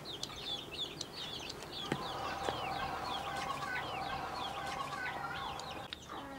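Chickens: many short, high, falling chirps a few times a second, over a faint steady hum that sets in about two seconds in, with a light click around then.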